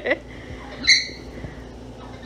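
Green-cheeked conure giving one short, high chirp about a second in.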